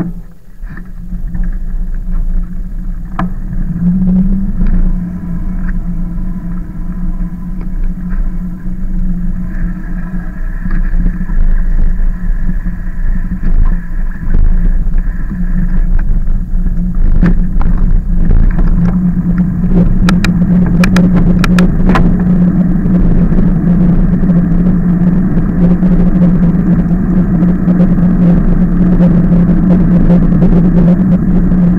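Riding noise from a camera mounted on an e-bike: a steady low hum and rough rumble of the moving bike and air over the microphone. It builds over the first few seconds as the bike gets going, with a few sharp clicks or rattles around the middle.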